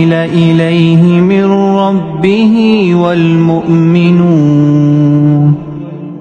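Solo melodic Quran recitation (tajweed) of the opening of Surah Al-Baqarah verse 285, the voice drawing out long held notes that bend and turn. The voice stops for a brief breath near the end.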